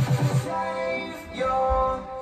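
Background electronic dance music: a fast, pulsing bass beat that stops about half a second in, followed by held synth chords.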